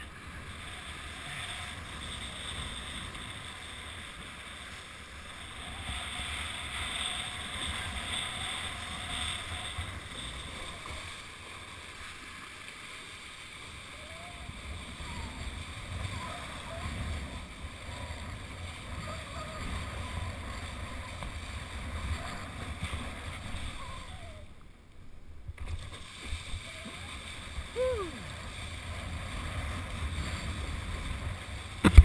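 Water rushing and splashing under a kiteboard as it rides across choppy lake water. The sound is a steady noise that dips briefly about five seconds before the end.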